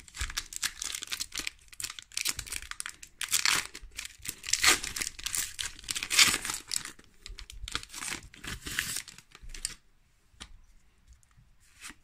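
Foil trading-card booster pack being torn open and crinkled by hand: a dense crackle of foil wrapper, with sharp tearing peaks. It dies down about ten seconds in, leaving quiet card handling.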